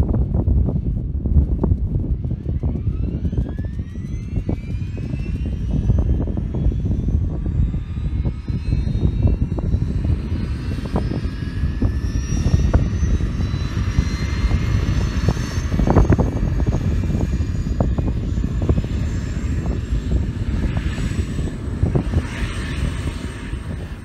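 Turbomeca Arriel turboshaft engine of an AS350 B2 AStar helicopter starting: a whine rises steadily in pitch as the gas producer spools up and the engine lights off, over a heavy low rumble. The main rotor is driven only through a free power turbine, with no clutch, so it is not yet turning with the engine.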